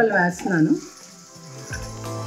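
A voice speaking for the first moment, then quiet background music coming in with steady low notes.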